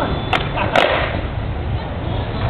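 Skateboard popped for a flat-ground trick: two sharp cracks of the deck hitting the court surface, about half a second apart.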